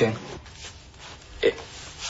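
The tail of a man's question on a phone call, then a pause broken by one short vocal sound, a brief hesitant noise from the listener, about a second and a half in.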